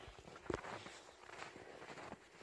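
Footsteps crunching through deep snow, with one louder crunch about half a second in.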